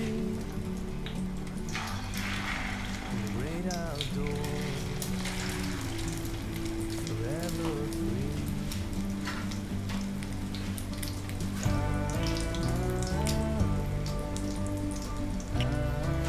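Egg-dipped slices of beef luncheon meat sizzling and crackling in hot cooking oil in a frying pan. Background music plays along, fuller from about twelve seconds in.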